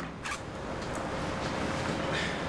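Clothing rustling and a zipper as trousers are undone, with a short sharper rustle shortly after the start.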